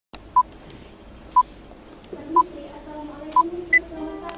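Electronic countdown beeps: four short beeps at one pitch, a second apart, then a single higher beep near the end.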